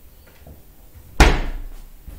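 A single loud bang about a second in, dying away over half a second.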